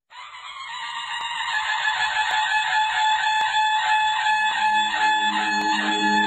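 Outro music: a steady, pulsing electronic chord fades up over the first couple of seconds, and a low held note joins about four and a half seconds in.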